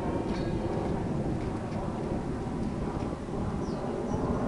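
Steady low rumble of wind buffeting the camera microphone outdoors, with a few faint knocks from the handball game underneath.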